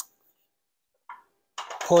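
Mostly near silence, with a brief sharp click at the start and a short faint sound about a second in; a man's voice begins near the end.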